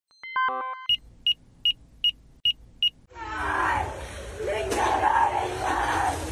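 A news programme's electronic logo sting: a quick run of falling tones, then six short high beeps evenly spaced about 0.4 s apart. From about three seconds in it gives way to rough street-scene audio of people's voices over background noise, with one sharp click.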